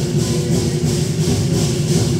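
Chinese ceremonial percussion: drums and cymbals playing a steady, fast beat, the cymbals clashing about three times a second over a dense drum rumble.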